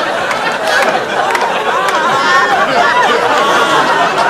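Many voices talking over one another at once: crowd chatter with no single clear speaker.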